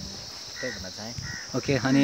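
A steady, high-pitched drone of insects in the vegetation, going on without a break under brief speech.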